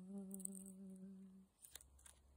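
A voice humming one long held note, with a slight waver, at the close of the hymn. It stops about one and a half seconds in, and a faint click follows.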